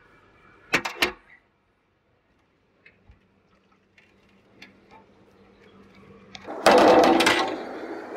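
Two quick knocks about a second in, then near silence, then a loud, steady rush of water starting near the seventh second: sewage pouring into a pump-station wet well.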